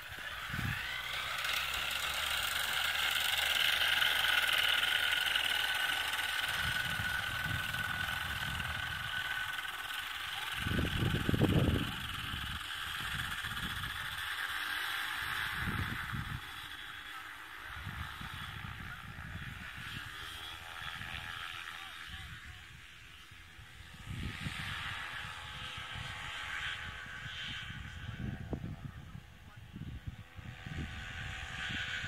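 Paramotor's backpack propeller engine running at high power through the takeoff and climb, a steady high drone that drifts slightly lower in pitch and slowly fades as it draws away. Wind buffets the microphone in low rumbles.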